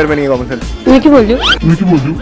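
Voices over background music, with a quick rising swish, an edited transition sound effect, about one and a half seconds in.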